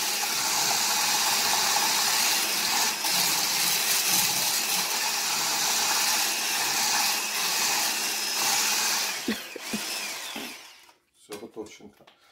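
Handheld immersion blender with a whisk attachment, whisking liquid batter in a tall plastic beaker: the motor runs steadily, then winds down about ten seconds in. A few light clicks follow near the end.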